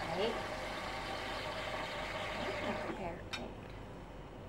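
Steady low hum of a Nespresso capsule espresso machine warming up before it brews, with a few brief spoken words; the hum drops away about three seconds in and a single sharp click follows.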